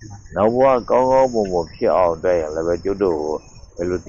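A man's voice speaking Burmese in a monk's sermon, pausing briefly near the end, with a faint steady high-pitched chirring behind it.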